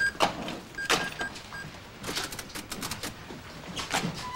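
Sharp clicks and knocks of objects handled at a shop counter, with a short high electronic beep that sounds a few times in a row before a second in and a quick run of clicks about two seconds in.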